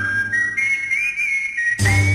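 A whistled melody in a break where the band drops out: a single high note slides up at the start, then a short tune of held notes with small bends, and the full band comes back in near the end.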